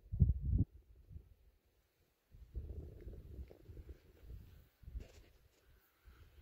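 Faint, irregular low rumble on the microphone: a short patch at the start, then a longer stretch from about two and a half to five and a half seconds, with a few faint ticks and no speech.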